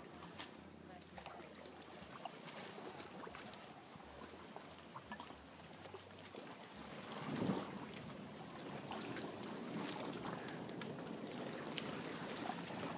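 A large hardwood bonfire catching from a torch: faint scattered crackles over a low hiss, a brief swell a little past halfway, then a soft steady rush of flames that grows slightly as the fire takes hold.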